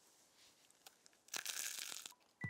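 A bite into a thick slice of crisp toast: one loud, dry crunch about one and a half seconds in, after near quiet.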